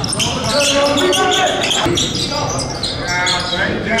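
Live basketball game sound: a ball bouncing on a hardwood court amid players' voices calling out.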